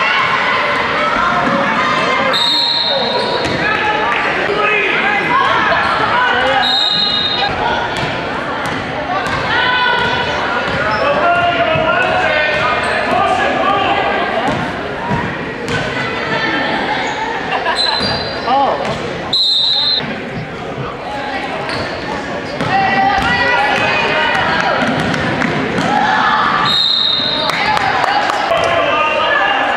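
Basketball game sounds in a reverberant gym: a basketball bouncing on the hardwood floor, with the voices of players and spectators throughout. Several brief high-pitched squeals cut through a few times.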